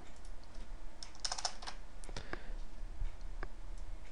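Computer keyboard keystrokes as code is copied and pasted: scattered single key clicks, with a quick run of several about a second in.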